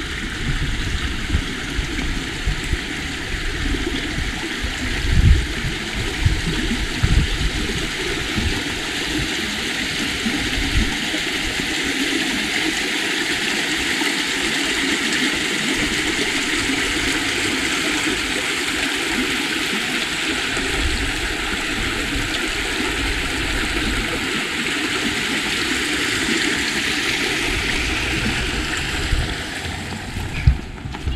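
A shallow stream running and splashing through a stone bridge arch: a steady rush of water that swells around the middle and eases off near the end. Irregular low buffets in the first ten seconds or so, with a couple of thumps about five and seven seconds in.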